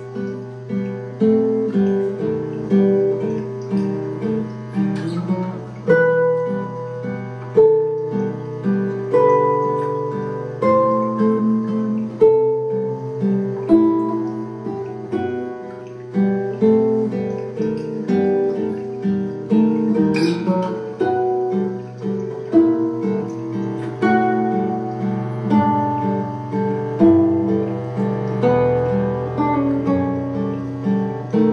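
Guitar played live: plucked notes ringing and overlapping in a slow melodic pattern over a steady low drone.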